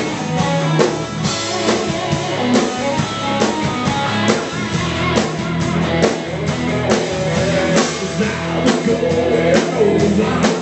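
Live rock band playing: overdriven electric guitars, bass guitar and a drum kit keeping a steady beat, an instrumental stretch with no lead vocal.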